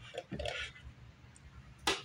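Quiet handling noise as a solid-body electric guitar is picked up off a bench, with one sharp knock just before the end.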